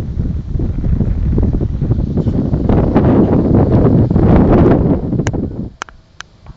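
Wind buffeting the microphone outdoors: a loud, uneven rumble that dies away shortly before the end, followed by a few short, high clicks.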